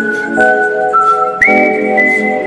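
Background music: a whistled melody of long held notes over sustained chords, with faint percussion ticks. The melody steps up to a higher note about one and a half seconds in.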